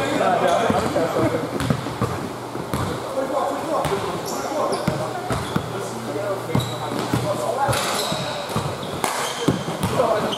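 A basketball dribbled and bounced on an indoor gym court, a run of sharp thuds, with short high sneaker squeaks as players run and cut. Players' voices call out in the echoing gym.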